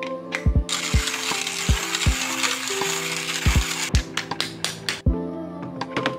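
Hand-cranked burr coffee grinder grinding beans as the crank is turned, a dense grinding noise lasting about three seconds, starting just under a second in. Lofi hip-hop music with a steady beat plays underneath.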